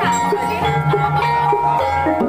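Javanese gamelan music accompanying an ebeg (kuda lumping) dance, with held ringing notes that step from pitch to pitch.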